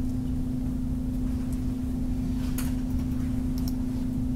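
A steady electrical hum over low rumble, the background noise of a computer screen-recording setup, with a few faint clicks a little past halfway and near the end.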